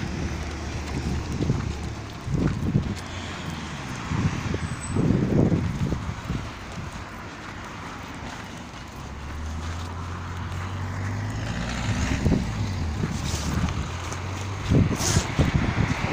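Outdoor street sound: a car engine passes, humming steadily for a few seconds from about nine seconds in. Low, irregular thumps of wind and walking hit the phone's microphone throughout.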